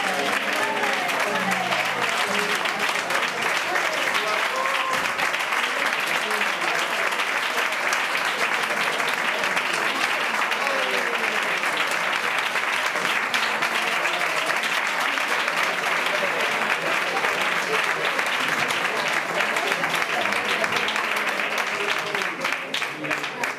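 Sustained applause from a small audience after a flamenco fandango, steady throughout, with voices calling out over it near the start and again about halfway.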